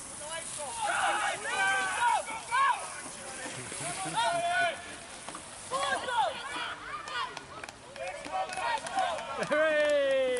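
Spectators shouting indistinct, excited encouragement at a cycle speedway race in short, high-pitched calls. Near the end comes one long call falling in pitch.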